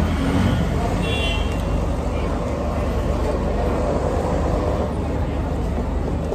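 Steady rumble of road traffic, with a short high horn toot about a second in.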